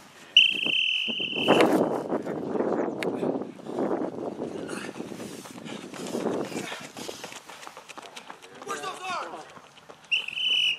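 A coach's whistle blown once in a steady, shrill blast lasting about a second and a half, followed by several seconds of rough outdoor noise mixed with indistinct voices.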